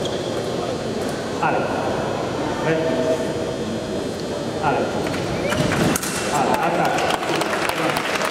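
Voices calling out over the murmur of a large hall. About six seconds in, an audience starts applauding and cheering.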